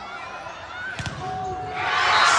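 A volleyball struck hard in an indoor arena: one sharp smack about a second in. Near the end the crowd breaks into cheering and shouting.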